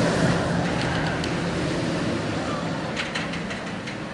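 Steel Vengeance roller coaster train rumbling along its track, fading as it moves away, with a few light clicks near the end.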